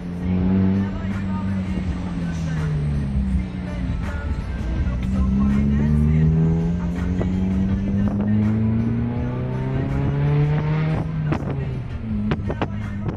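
Honda City Type Z's SOHC VTEC four-cylinder engine running with no muffler, heard from inside the cabin while driving. The revs sag over the first few seconds, then climb steadily for several seconds before dropping sharply near the end.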